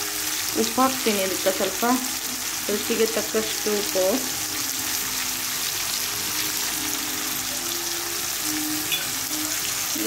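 Brinjal slices, tomato and green chillies frying in tomato masala in a pan, with a steady sizzle.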